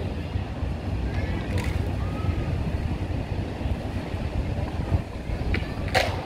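Steady low rumble of wind on the microphone, with a sharp click near the end.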